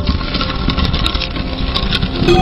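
Loud, steady rumbling sound effect of an animated logo intro, with a hum of steady tones under it and a few brief high chiming glints.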